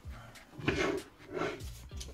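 A glass baking dish being handled with oven mitts and set into a larger glass dish on a stovetop: a few short knocks and scrapes of glass, the sharpest about two-thirds of a second in.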